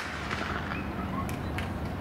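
A starting gun shot dies away in a ringing echo as the sprinters break from the blocks at the start of a 100 m race. Two more sharp cracks come about a second and a half in.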